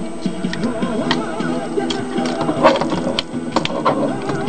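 Scattered sharp clicks and snaps of the plastic parts of a Transformers Universe Galvatron action figure being pushed and turned during transformation, over background music.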